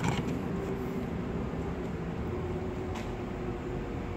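Steady low background hum with a couple of faint clicks, one at the start and one about three seconds in.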